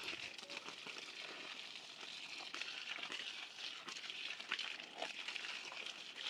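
Water from a garden hose spraying into potted plants and onto wet paving: a steady, faint hiss with light patter.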